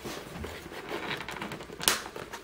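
Light scratching and clicking as the plastic housing of a tritium exit sign is worked at, then one sharp crack near the end as it gives under prying. Its owner hopes the crack is just the cover cracking or the glue starting to separate.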